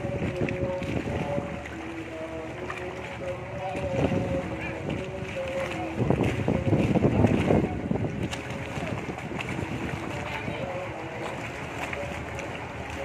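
Background music carrying a simple melody, over outdoor noise with bursts of low rumble about four seconds in and again from about six to seven and a half seconds.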